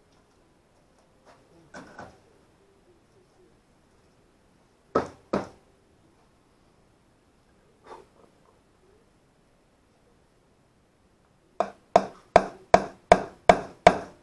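A hammer tapping a carriage bolt into a hole in a wooden board: two blows about five seconds in, then a run of about seven quick blows, roughly three a second, near the end. A few faint knocks of handling come between them.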